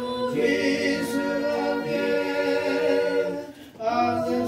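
Three voices, two men and a woman, singing an Angami Naga praise song unaccompanied in harmony, on long held notes, with a short break for breath near the end.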